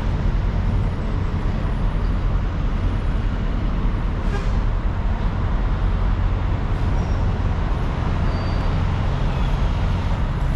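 Tour bus diesel engine idling, a steady low rumble and hum that holds the same level throughout.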